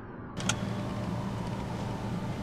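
A sharp click about half a second in, then a car engine idling with a steady low hum inside the car.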